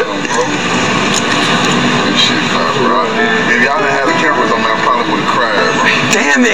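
Indistinct voices talking at once, with no clear words.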